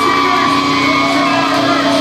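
A metal band playing live through a club PA, loud and dense, with a steady low held note and held notes that slide up, hold and slide back down in pitch.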